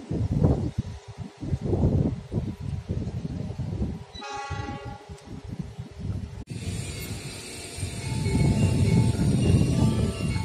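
Wind buffeting the phone's microphone, with a short train horn about four seconds in. After an abrupt cut about six and a half seconds in, the station's train-arrival chime melody starts playing over the public-address speakers.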